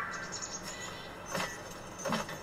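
Quiet anime episode soundtrack: faint background music and ambience, with a short sharp sound effect about one and a half seconds in.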